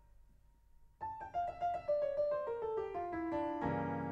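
Solo piano music: a note fades almost to nothing, then a quick run of notes descends from about a second in and lands on a louder chord near the end that rings on.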